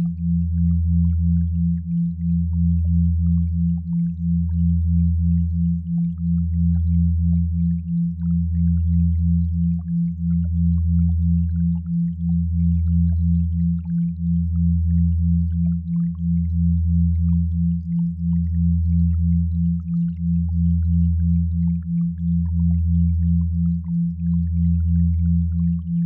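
Generated sine tones for binaural and isochronic beats: a deep hum that swells and fades about every two seconds, under a slightly higher tone pulsing two or three times a second.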